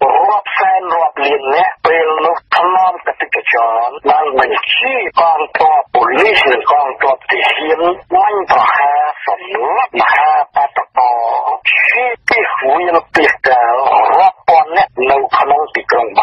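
Speech only: a voice talking steadily, with only brief pauses between phrases.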